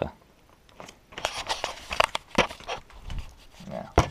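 Cardboard and plastic of a Smarties advent calendar crinkling and tearing as a door is pushed open, a quick run of sharp rustles and clicks, with a single sharp knock at the very end.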